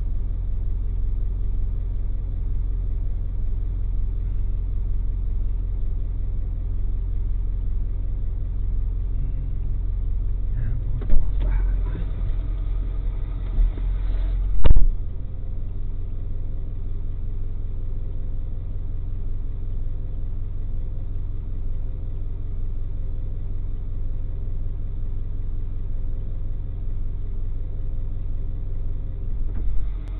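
Tow truck's engine idling steadily with a low rumble. A sharp bang comes about eleven seconds in, and a louder one just before fifteen seconds.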